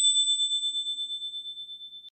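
A bright bell-like chime sound effect, struck just before, ringing out and slowly fading with a quick wavering shimmer.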